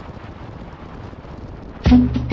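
Wind buffeting the helmet-mounted camera's microphone over a low rumble of motorcycle and road noise while riding. Near the end, background music with a percussion beat starts up suddenly and is the loudest sound.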